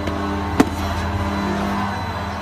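Steady hum of the PVC roof tile production line's machinery, with a single sharp knock about half a second in as a PVC hip ridge tile is set down on the concrete floor.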